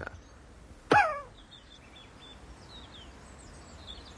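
A sudden short cry from a person about a second in, falling in pitch, followed by faint birdsong chirping.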